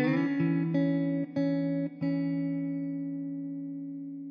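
Background music: a guitar plucking a few notes and chords, then one chord left ringing and slowly fading away.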